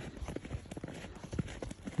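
Footsteps of a person walking on snow, a run of short, soft crunches.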